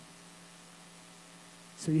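Steady electrical mains hum, one low tone with faint overtones, heard through a pause in the talk; a man's voice comes in near the end.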